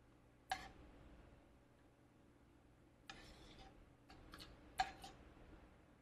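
A spoon clicking and scraping against a skillet as cooked corn is scooped into small sample cups: one sharp click about half a second in, a short scrape around three seconds, then a few quick taps near the end, the second-to-last loudest.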